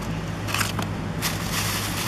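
Crinkling, rustling handling noise in two spells, about half a second in and from a little after a second, over a steady low engine hum.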